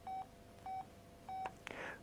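Motorola MicroTAC mobile phone keypad beeping as digits are keyed in: three short beeps of the same pitch, about two-thirds of a second apart, with a faint click after the last.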